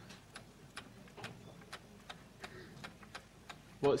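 About ten faint, irregular clicks and taps from hands handling equipment on a lectern desk, against quiet room tone. A man's voice starts right at the end.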